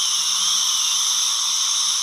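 Dental suction tip hissing steadily in the mouth, with a faint low hum underneath.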